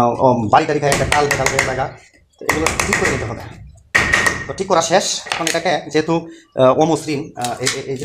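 A man talking, over a few quick, light hammer taps on a ceiling fan rotor's steel shaft to drive its ball bearing off.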